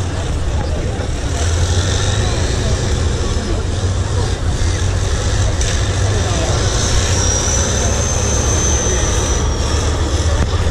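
Tatra 815 6x6 trial truck's diesel engine running with a steady low rumble as it crawls over a steep off-road section, with crowd chatter underneath. A thin high whine rises over it in the last few seconds.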